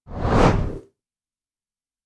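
A single whoosh sound effect for a news transition: a rush of noise that swells and fades within the first second.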